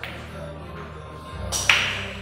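Hard pool balls clacking on a pool table: a small click at the start, then a sharp, much louder clack about three quarters of the way through. Background music plays throughout.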